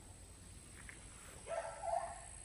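A chicken calling once, briefly, near the end, over a faint steady outdoor background.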